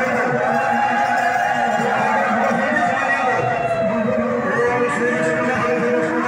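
Devotional group chanting (nama sankirtan): a man's voice leading through a microphone with several women's voices singing along in long, drawn-out notes.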